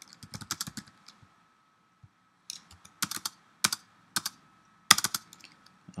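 Typing on a computer keyboard: a quick run of keystrokes, a pause of about a second and a half, then scattered keystrokes with a few harder key presses.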